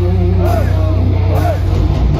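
Death metal band playing live, heard loud through a phone's microphone in the crowd: distorted electric guitars and bass hold low notes while a high rising-and-falling note repeats about once a second.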